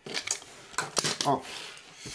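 Plastic side cover of a JVC GX-N7S video camera being pulled off its body: a few sharp plastic clicks and snaps, the sharpest about a second in.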